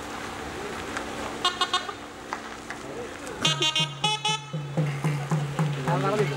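Car horns honking: a quick burst of four short toots about a second and a half in, then several louder honks a couple of seconds later. As the honks start, a drum begins a steady low beat of about three strokes a second.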